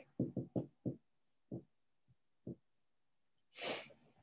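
A few faint short low sounds in the first second, then two single ones, and a sharp audible intake of breath near the end.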